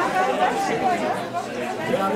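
Background chatter of many guests talking at once.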